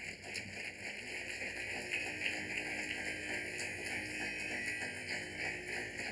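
An audience applauding: a steady patter of many hands clapping.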